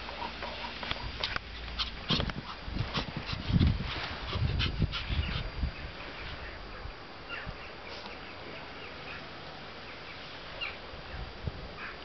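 A young Pomeranian dog making short, high-pitched sounds, with a run of sharp clicks and low thumps in the first half that thin out after about six seconds.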